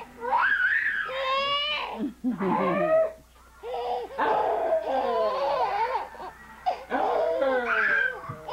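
A baby squealing and laughing in high-pitched bursts that rise and fall in pitch, with a short pause about three seconds in.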